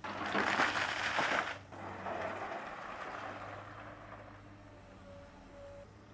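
Stones tipped from an excavator bucket into a deep trench: a loud rattling pour of rock for about a second and a half, then a smaller spill that trails off over the next two seconds.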